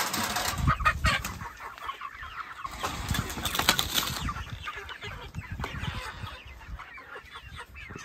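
A flock of chickens clucking and calling, with occasional wing flapping.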